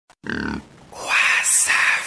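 A person's short voiced grunt, then about a second in three harsh, breathy rasps in quick succession, the middle one hissy.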